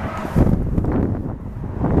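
Wind buffeting the microphone: a low rumble that swells about half a second in.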